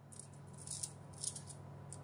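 Faint, irregular light rattling and rustling: a handful of short ticks scattered through the moment, over a low steady hum.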